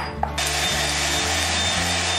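A glass bowl is set down with a short knock. Then, about a third of a second in, an electric hand mixer starts and runs steadily with a thin high whine, whipping cream.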